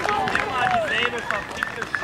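Several people shouting and calling out over a football pitch, with scattered handclaps, celebrating a goal just scored.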